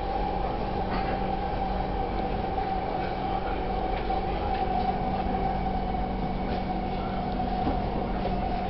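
Metro train running at speed, heard from inside the carriage: a steady rumble of wheels on the track with a constant whine.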